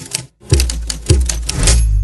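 Glitch-style transition sound effect: rapid clicks and crackle over two deep bass thumps about half a second apart, dying away near the end.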